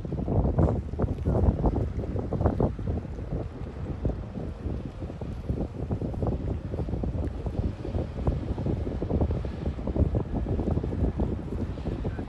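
Wind buffeting the microphone in irregular gusts, a rough low rumble that rises and falls.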